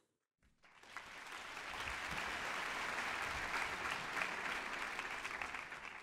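Audience applauding, starting after a brief silence about half a second in, building over the next second and holding steady, then easing off near the end.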